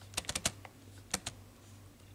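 Typing on a computer keyboard: a quick run of about five keystrokes in the first half second, then two more just over a second in.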